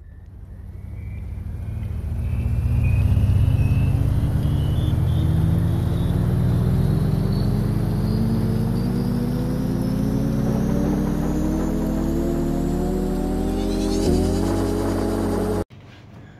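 Synthesized intro sound effect: a low rumble under tones that climb slowly in pitch, fading in over the first few seconds, with a hit about fourteen seconds in, then cutting off suddenly just before the end.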